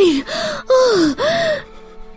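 A voice-acted series of four short, breathy vocal cries, each falling in pitch, over a held music drone; the cries stop about a second and a half in and the drone carries on.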